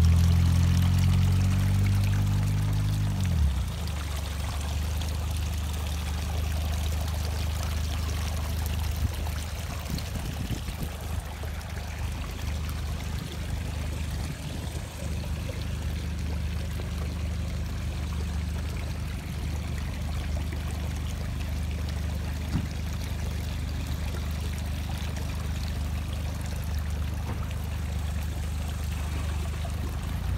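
Water trickling and pouring into a garden lily pond, a steady splashing over a constant low hum. A deeper layered drone is also heard at the start and stops about three and a half seconds in.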